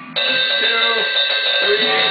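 Distorted electric guitar: a note or chord struck just after the start and left ringing on, held steady.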